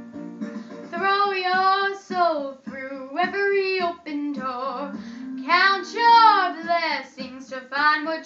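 A young girl singing solo, holding long notes with vibrato, over a guitar accompaniment, recorded through a phone's microphone.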